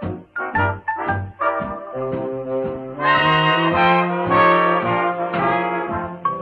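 A 1938 swing big band recording plays an instrumental passage with no vocal. Short detached notes come first, then about three seconds in the brass section enters louder with held chords.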